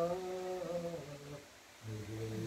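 A man's voice chanting a marsiya, the Urdu elegy for Imam Husain, holding a long melodic note that glides slightly. The note fades about a second and a half in, and the voice picks up again just at the end.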